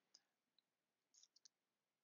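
Near silence with a few faint computer mouse clicks: one near the start and a quick cluster of three just past the middle.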